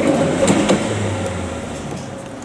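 Metre-gauge open passenger wagons rolling away over the rails, their wheel noise fading, with a couple of sharp clicks from the wheels on the track about half a second in.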